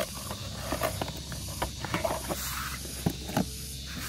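Cardboard toy box being handled and opened, with scattered light clicks, scrapes and rustles as a plastic toy police car is slid out of it, over a steady low hum and faint hiss.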